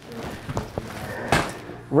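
Quiet room noise with a few small clicks and rustles, and one sharp knock or click a little over a second in.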